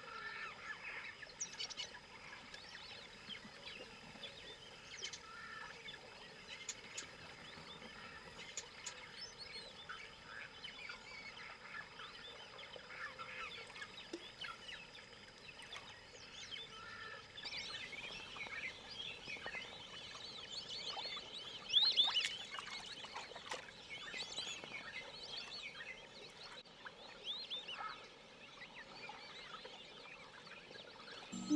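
Chorus of tropical birds calling: many overlapping short chirps and whistles, busier and louder in the second half.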